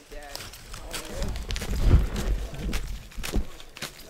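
Faint voices talking in the background, with a low rumble that swells about halfway through and scattered short crunches, like footsteps in snow.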